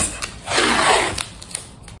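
Blue painter's tape pulled off its roll with a rasping tear that starts about half a second in and lasts about a second.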